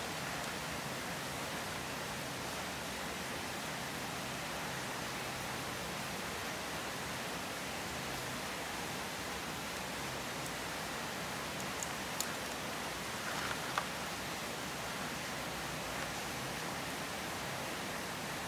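Steady, even hiss with a few faint clicks and taps in the second half as raw crabs are handled and pulled apart in a plastic basin.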